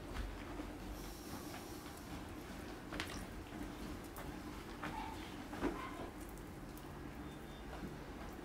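Faint handling of wet clay on a potter's wheel as a pot is shaped by hand, with a few soft taps and a low steady hum beneath.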